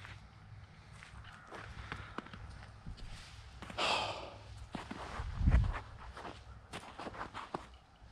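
Footsteps crunching over dry grass, pine needles and twigs on a forest trail, with scattered light snaps and rustles. A louder breathy rush comes about four seconds in, and a low thump a little later.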